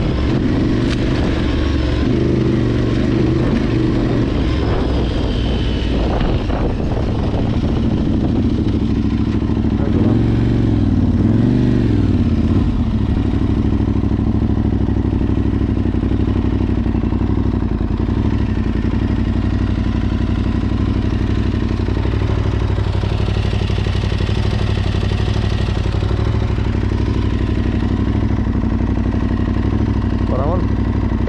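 Adventure motorcycle engine running under way on a gravel track, with tyre and wind noise. Its pitch rises and falls a few times around ten to twelve seconds in as the throttle is worked, then it settles at a lower, steady speed.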